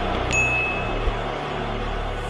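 A single bright bell ding about a third of a second in that rings on and fades over about half a second: the notification-bell sound effect of a subscribe-button overlay. It plays over the sustained low bass of the backing music.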